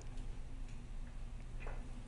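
Quiet studio room tone: a low, steady hum with a few faint clicks.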